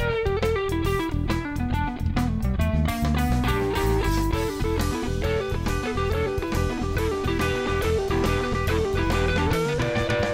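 Live rock band playing: an electric guitar takes a lead line over drum kit and bass guitar. The guitar first runs downward, then picks quick alternating notes, and ends with a rising bend near the end.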